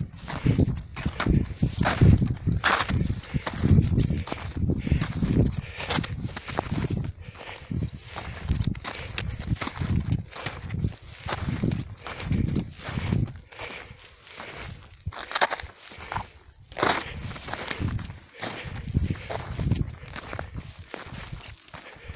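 Footsteps of a hiker walking uphill on patchy snow and dry grass, one step after another.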